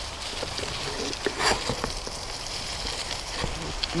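Bicycle tyres rolling over a dirt trail covered with dry fallen leaves: a steady crackling hiss with a low rumble, broken by scattered clicks and knocks, one louder knock about one and a half seconds in and a few more near the end.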